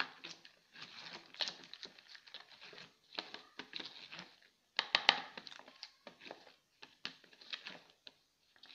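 A steel spoon stirring thick pakora batter in a plastic bowl, working in water just added. Irregular scraping with clicks of the spoon against the bowl, the sharpest about five seconds in.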